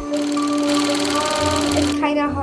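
Film projector sound effect: a rapid, even mechanical clatter, laid over soft background music with long held notes.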